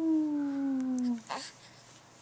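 A young baby's long cooing vowel, drawn out and sliding slowly down in pitch, ending a little over a second in, followed by a short breathy sound.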